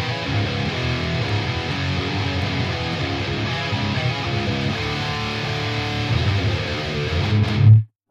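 Electric guitar tracks playing back from a mix through an amp plugin and the Cab Lab 4 impulse-response loader with a cabinet impulse response loaded, the loader's global high cut being opened up as it plays. The playback stops abruptly just before the end.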